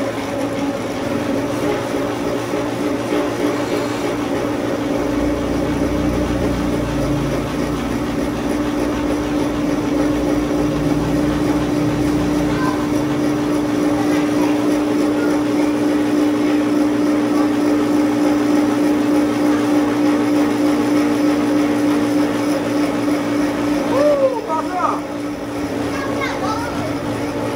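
Cotton candy machine running: its spinning head motor hums steadily at one pitch while floss is spun out, with an added low rumble for several seconds in the middle.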